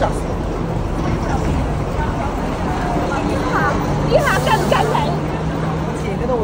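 Street traffic rumbling steadily, with an engine hum from about four seconds in, and passers-by talking.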